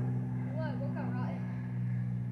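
A steady low machine hum made of a few even tones, which dies away just after the end. Faint distant voices can be heard about halfway through.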